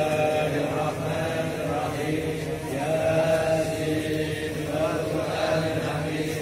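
A large group of men chanting Arabic religious recitation together in unison, a steady, sustained group chant.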